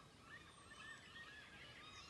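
Faint bird calls: many short, arching chirps overlapping one another.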